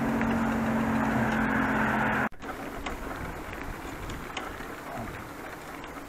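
Steady vehicle hum and road noise while cycling beside a main road, cut off suddenly a little over two seconds in. Quieter bicycle riding follows, with a few light clicks and rattles over paving stones.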